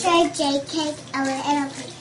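Tap water running into a bathroom sink and over a young child's hands, with the child's high voice over it.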